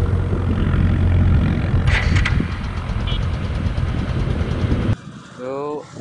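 Motorcycle riding at speed on a highway: heavy wind rush on the microphone over the running engine, with a few sharp clicks about two seconds in. The sound cuts off suddenly about five seconds in.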